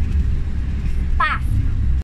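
Steady low rumble of a moving car heard from inside the cabin, with one short vocal sound from a child a little over a second in.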